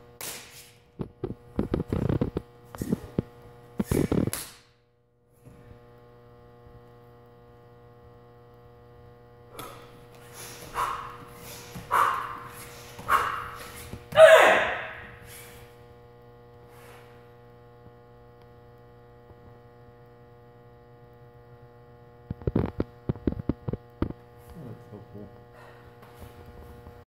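Karate kata on a matted dojo floor: bursts of sharp movement sounds in the first few seconds and again near the end, and four short shouts (kiai) in the middle, the last the loudest and falling in pitch. A steady electrical hum runs underneath.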